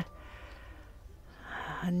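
Low background room noise, then a short breath in about a second and a half in.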